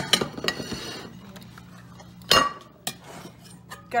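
Stainless steel steamer pots and dishes being handled and set down on a kitchen counter: scattered light clinks and scrapes, with one louder metallic clank a little past halfway.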